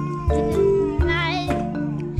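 Background music with a mallet-percussion melody, and over it a young child's long, high-pitched, cat-like cry that wavers about a second in.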